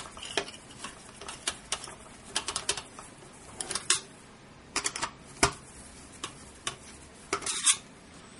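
Metal screwdriver turning the mounting screws of a tower CPU cooler, making irregular small metallic clicks and ticks. A sharper knock comes about five and a half seconds in, and a short cluster of clicks near the end.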